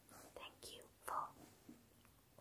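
Soft close-up whispering in a few short phrases.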